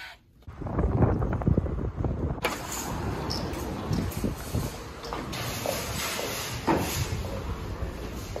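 Low rumble of a handheld phone microphone, then from about two seconds in a steady noisy wash with scattered clicks while walking up to and through a shop's automatic sliding glass doors.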